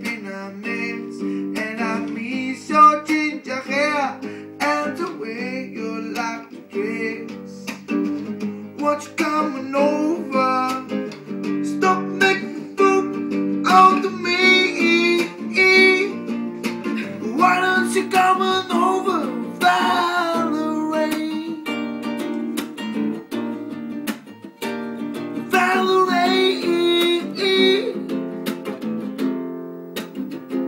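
Acoustic guitar strummed in a rhythmic chord accompaniment, with a man singing over it.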